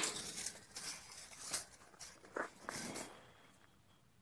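Faint scraping, rustling and a few soft taps as a tape measure is run along the bottom of a corrugated-metal gate to measure its width, with footsteps on the ground.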